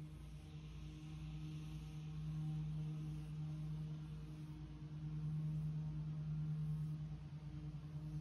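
A quiet, steady low hum with a faint pulsing underneath.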